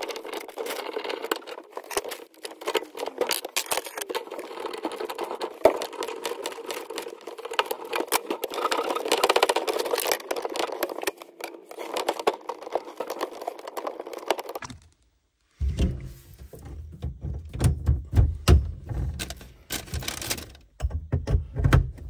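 Hands working braided tap flexi hoses and brass compression fittings under a sink: a run of small metallic clicks and light rattles. About fifteen seconds in the sound cuts out briefly, then comes back as heavier low knocks and rubbing.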